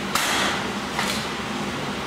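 Sharp knocks, one just after the start and another about a second in, over a steady hiss.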